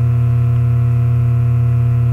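Steady, loud electrical hum with a stack of even overtones, unchanging throughout.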